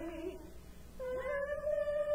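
Church choir singing a carol. A held phrase ends just after the start, there is a short pause, and about a second in the voices come back in, sliding up onto a long held note.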